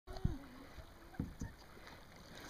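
Dull low knocks from a sea kayak on calm water, one near the start and two close together a little after a second in, with a short falling voice sound at the very start.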